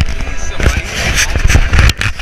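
Handling noise on the camera's microphone: a hand rubbing and knocking against the camera, giving loud, irregular scraping with heavy low thumps.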